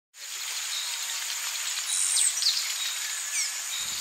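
Forest ambience: a steady high insect drone, with a few short bird chirps sweeping down in pitch about halfway through and again near the end.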